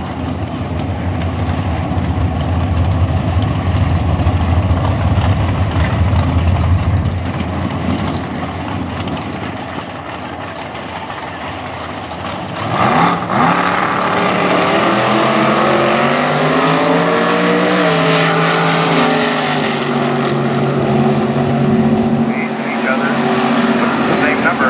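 Two big-block V8 drag cars, a 572-cubic-inch Ford in a Mustang and a 469-cubic-inch engine in a Nova, idling with a loud low rumble at the start line. About 13 seconds in they launch at full throttle, and the engine pitch climbs and then falls away as they run down the strip.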